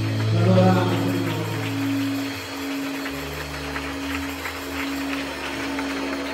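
Live band playing softly: a keyboard holds one long steady note while the bass moves to lower notes about halfway through, with a voice over the first second.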